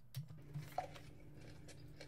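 Faint chewing and biting on a burger, a few soft crunching clicks near the start, over a low steady hum.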